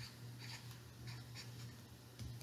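Felt-tip marker writing on a small square of construction paper: a run of faint, short scratching strokes.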